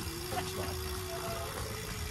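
Wind buffeting the microphone of a phone carried on a moving bicycle: a steady low rumble with a faint held tone above it.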